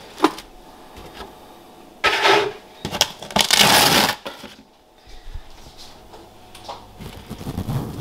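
Close-up handling noise: a single sharp click just after the start, then two loud bursts of rustling and rubbing close to the microphone, about two and three and a half seconds in.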